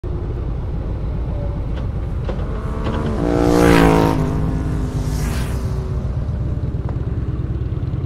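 Motorcycle engine and wind noise at riding speed, heard from the rider's seat: a steady low rumble. About three to four seconds in it gets louder, with a clear pitched engine note and a rush of hiss.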